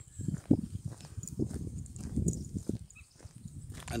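Footsteps walking on a gravel track, heard as a run of dull thuds at walking pace.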